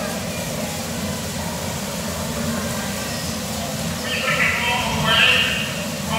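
Bumper cars running on a dodgem floor, a steady rumble of the cars rolling with the hum of their electric drive. From about four seconds in, high-pitched voices call out over it.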